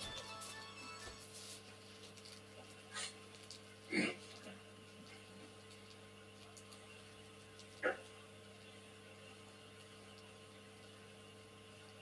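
Faint steady electrical hum with three brief, faint sounds about three, four and eight seconds in, the one at four seconds the loudest.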